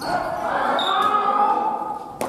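A person's voice in one long drawn-out call, in a large gym hall.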